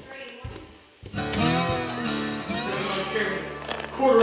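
Background music with an acoustic guitar, coming in loud about a second in, with voices over it.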